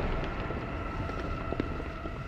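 City street ambience: a steady low rumble of traffic and a crowd on foot, with a faint high tone held over it.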